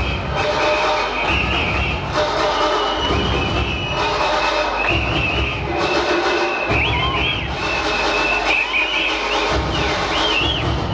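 Loud early-1990s rave dance music played over a club sound system, with a pulsing bass line and high warbling glides about seven seconds in and again near the end.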